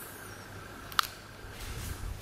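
A single sharp click about a second in, with a short metallic ring, over a faint steady high-pitched hum and quiet room noise.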